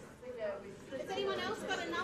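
Overlapping chatter of students talking amongst themselves in small groups, several voices at once in a classroom.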